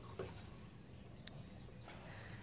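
Quiet outdoor background with a few faint, high bird chirps in the second half and a single light click just past the middle.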